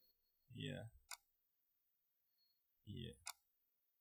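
Near silence, broken twice by a faint, brief voice-like sound falling in pitch, each followed right after by a sharp click.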